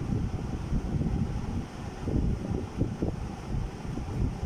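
Low, uneven rumble of air buffeting the microphone, fluctuating in strength, with little higher-pitched sound on top.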